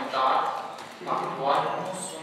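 Speech: a man talking at a steady conversational pace.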